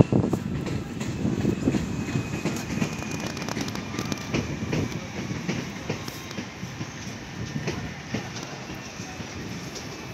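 Z22500 double-deck electric train running in toward the platform: a low rumble with scattered clicks over the rail joints and a faint high whine. The rush is loudest at the very start and eases off after that.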